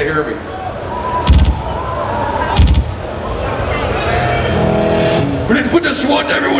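Two heavy drum hits through the stage PA, about a second and a quarter apart, each sudden with a deep low end, over the live crowd and room noise. A held voice or shout follows near the end.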